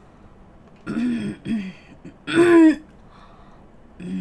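A woman's three short wordless vocal noises, like throat clearing, the third the longest and loudest, as she tastes a bite of rainbow crepe cake she has set out to try as a bad-tasting flavour.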